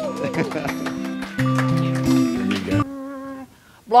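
Live band music with held guitar chords and a voice over it, cut off abruptly a little under three seconds in, leaving a fading tone and a brief moment of quiet.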